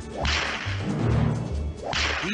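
Two whip cracks about a second and a half apart, each with a long echoing tail, in the intro of a country-western title song, over a plodding bass line.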